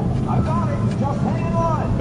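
Indistinct voices in the background, rising and falling, over a steady low rumble.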